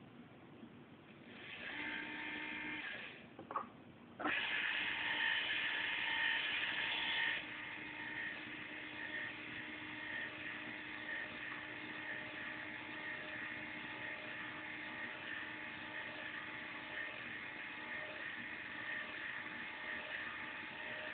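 Small electric gear motors of a 1:55 scale RC Gottwald crane whirring with a high whine: a short run starting about a second and a half in, a click, then a louder run from about four seconds that drops after about three seconds to a steady, quieter whine.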